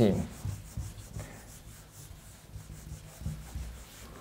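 Whiteboard eraser rubbing across a whiteboard in uneven wiping strokes, wiping it clean.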